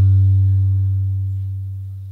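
A loud, low electrical hum through the lectern's PA system, swelling and then fading away over the two seconds.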